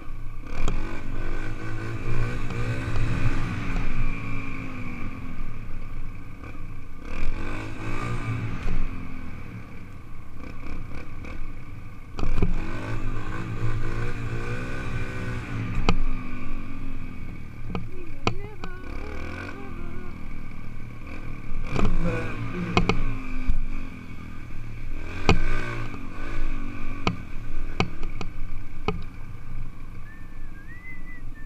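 Dirt bike engine revving up and dropping back in repeated swells as it rides a gravel road, with sharp knocks and rattles now and then in the second half.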